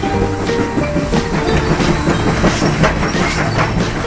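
Motorized TrackMaster Salty toy diesel engine running along plastic track with a steady rattling clatter, over background music.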